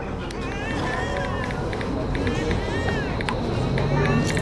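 Dense layered ambience of indistinct background voices over a low rumble, with sharp clicks scattered throughout and a run of short high chirps.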